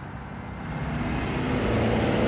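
Engine rumble of a passing motor vehicle, growing steadily louder as it approaches.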